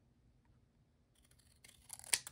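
Near silence, then faint snips of scissors cutting through a small piece of cardstock in the last half second.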